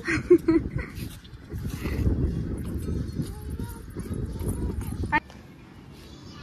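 Wind buffeting the microphone: an uneven low rumble that stops suddenly about five seconds in.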